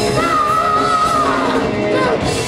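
Live heavy metal band playing loud: distorted electric guitar, bass guitar and drums, with a long high held note over the top for about a second that then falls away.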